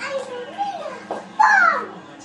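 A young child's voice making wordless sounds, with a loud high-pitched cry that slides down in pitch about a second and a half in.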